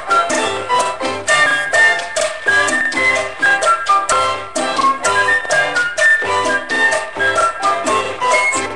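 Salsa music playing: an instrumental passage with a steady percussion rhythm under the melody, no singing.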